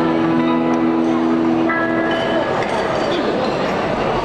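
Banquet hall crowd talking, with dishes and glasses clinking, while the band sounds one held chord that fades out about two and a half seconds in, higher notes joining it shortly before it ends.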